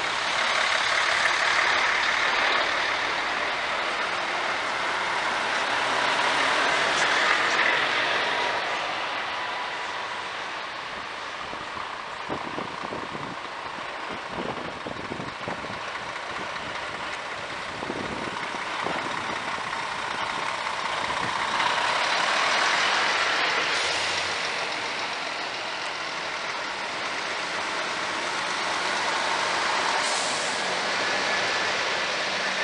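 Heavy truck tractor units driving slowly past one after another, engine and tyre noise swelling as each goes by, loudest a couple of seconds in, around seven seconds and again past twenty seconds.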